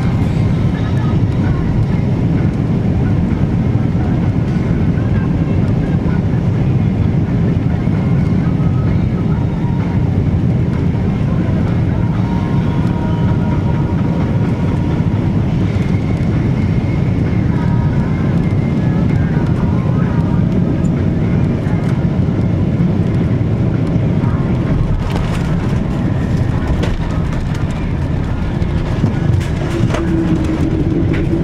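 Cabin noise of a United Boeing 777-200 on final approach and landing: a steady, loud low rumble of engines and airflow, with a broader rush of noise from about 25 seconds in as the jet touches down on the runway.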